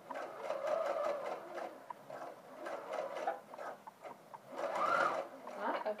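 Electric sewing machine sewing a straight seam at a gentle pace through gathered fabric. Near the end the motor speeds up and slows again.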